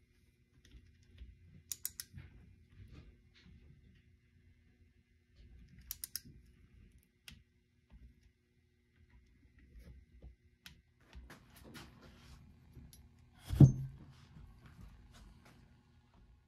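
Hand socket ratchet clicking in short runs of a few clicks as a bolt is worked down, with one heavier thump about three-quarters of the way through.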